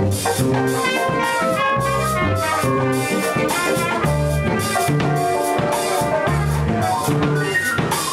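A small jazz band playing live, with a drum kit keeping a steady cymbal beat under a walking bass line, keyboards and trumpet.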